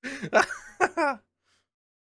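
A man laughing in a few short, breathy bursts, over in just over a second.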